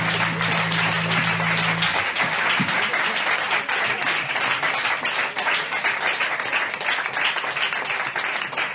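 Audience clapping in a small room at the end of a song, with the band's final low chord still ringing under the applause for about the first two seconds.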